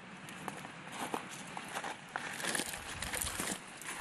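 Footsteps of people walking along an overgrown dirt path: irregular steps over a steady outdoor hiss.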